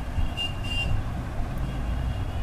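A steady low background rumble, with two short, thin high beeps about half a second in.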